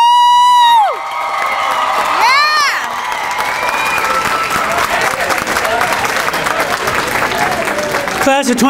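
Audience cheering and clapping. A shrill held cheer comes in the first second, a shorter rising-and-falling whoop follows about two and a half seconds in, and then steady applause with cheering carries on.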